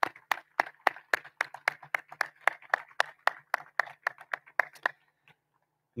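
Hands clapping close to the microphone, separate claps at about four a second, stopping a little before five seconds in.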